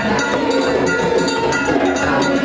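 Group of voices singing a chant together over fast, steady rattling percussion.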